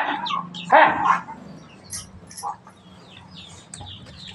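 One short, louder call about a second in, then faint high chirping of birds.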